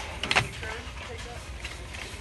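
Plastic DVD cases clacking against each other and the wire rack as they are handled, with a sharp clatter a little way in, over a steady low hum.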